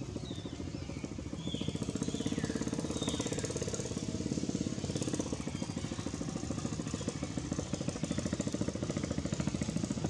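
A small engine running steadily with a fast, even pulsing, growing louder about a second and a half in, with a few short bird chirps in the first few seconds.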